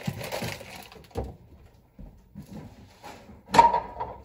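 Kitchen food-prep noises: packaging rustling in the first second, a soft knock a little after, and a louder short sound near the end.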